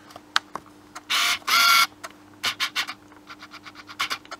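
Camera being handled and set in place close to the microphone: scattered clicks, two short loud rasps about a second in, then a quick run of light clicks near the end.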